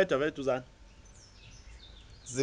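A man's laugh trails off about half a second in. Then a faint bird call glides down in pitch for about a second.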